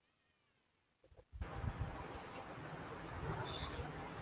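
A faint, drawn-out animal call that rises and falls in pitch, meow-like. About a second and a half in, a steady background hiss with low rumbles cuts in suddenly.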